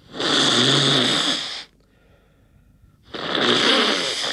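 A man snoring loudly in his sleep: two long snores, each about a second and a half, the second beginning about three seconds in.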